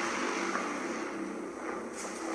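A steady low hum with a faint hiss behind it, easing off slightly in level.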